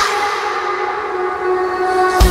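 Electronic dance-pop remix in a breakdown: the kick drum has dropped out and a sustained synth chord holds steady without a beat.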